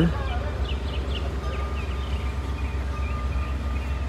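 Outdoor background: a steady low rumble with a few faint, short bird chirps in the first half.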